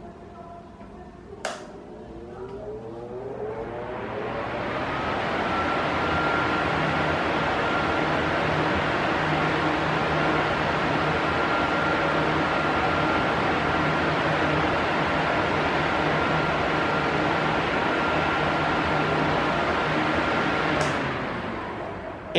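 An Arno Silence Force 40 cm electric fan is switched on with a click. It spins up over a few seconds to a steady rush of air with a faint steady whine, loud enough to drown out the street noise, and there is another click near the end as the sound falls away. The owner takes the noise to be normal, given the power of its motor.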